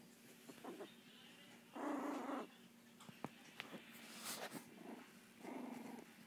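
Miniature pinscher puppy growling twice in short bursts: once about two seconds in (the loudest) and again near the end, with faint clicks between.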